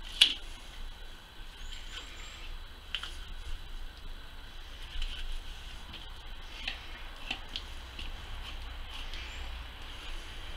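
Boning knife cutting a hare's loin fillet away from the carcass: soft wet slicing of raw meat, with scattered small clicks.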